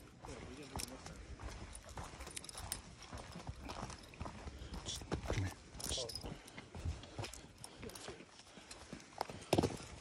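Running footfalls on a dirt forest trail: a steady run of short thuds as the runner and a dog on a leash move along the path.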